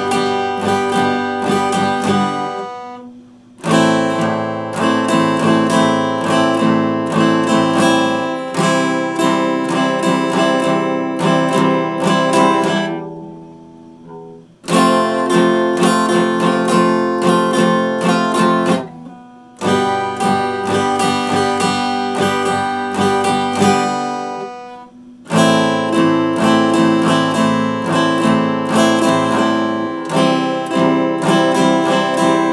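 Epiphone acoustic guitar strummed in chords, without singing. Four times a chord is left to ring and die away before the strumming starts again.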